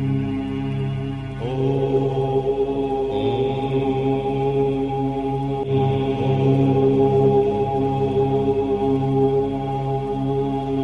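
Om chanting: several voices hold long, overlapping Om drones that blend into one steady chord, with fresh voices coming in about one and a half, three and six seconds in.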